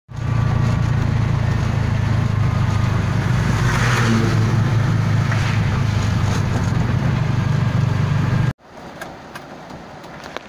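Steady low drone of a vehicle's engine and tyres heard from inside the cab while driving on a wet road, cutting off suddenly near the end.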